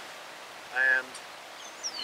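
A man's voice says one short word over steady outdoor background noise. Near the end a short high whistle falls in pitch, like a bird call.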